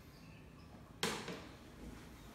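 A glass set down on a serving tray, one sharp clack about a second in that rings out briefly.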